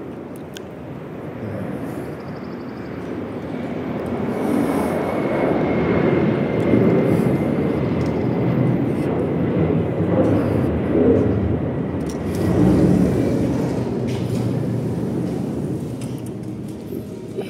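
A jet airliner passing low overhead: a rushing engine noise that swells over several seconds, holds with a faint high whine, then fades away toward the end.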